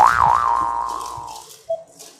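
An added comedy sound effect: a pitched, wobbling tone that settles and fades out over about a second and a half, followed by a short faint blip.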